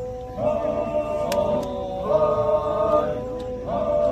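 A group of Chakhesang Naga men chanting together, several voices holding long notes. A new phrase slides up into a held note about every second and a half to two seconds.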